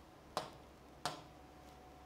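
Two short, sharp clicks about two-thirds of a second apart, over faint room tone.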